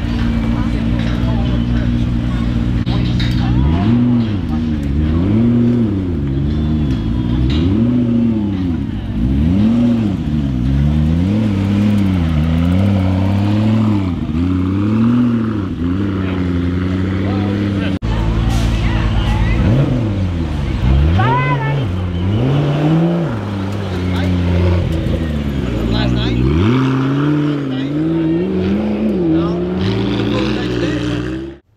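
McLaren P1's twin-turbocharged V8 being revved again and again, the engine note climbing and falling every second or two. There is a short break about two-thirds in, and then the revving carries on.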